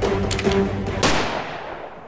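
Handgun gunshot sound effects over background music: a few quick shots within the first half-second, then a louder shot about a second in. Its echoing tail fades away together with the music near the end.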